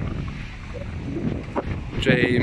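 Wind rumbling on the microphone outdoors, a steady low noise, with a faint tap about one and a half seconds in.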